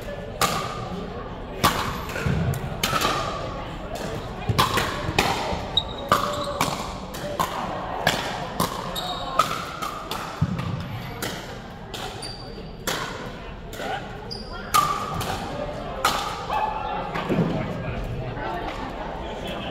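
Pickleball paddles hitting a plastic pickleball over and over in rallies, a string of sharp pocks at uneven spacing, some in quick succession, echoing in a large gymnasium. Voices chatter throughout.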